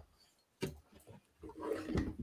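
Mostly near silence, then a short, low, rough vocal sound from a person near the end: a wordless noise rather than speech.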